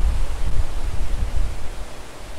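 Outdoor background noise: a steady hiss with a low, uneven rumble beneath it.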